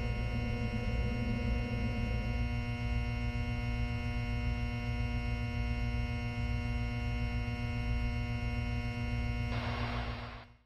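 A steady droning hum of many held tones over a low rumble, with a hiss coming in near the end.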